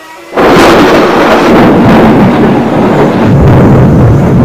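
A loud, steady, thunder-like rumbling roar that starts suddenly about a third of a second in.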